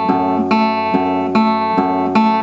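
Acoustic guitar plucked in a steady picking pattern, a new note or chord about every 0.4 s over strings left ringing.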